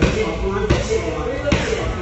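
Gloved punches landing on a hand-held striking pad: three hits, about three-quarters of a second apart.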